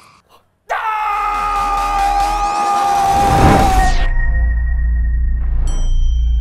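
Logo intro sting: after a brief silence, a loud cinematic hit starts about a second in, full of falling tones, then settles into a low rumble. Bright ringing tones come in near the end.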